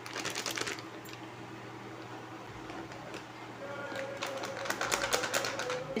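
A ready-mix packet crinkling as it is handled and emptied, in two bursts of rapid crackles: one at the start and a longer one from about four seconds in. A steady low hum runs underneath.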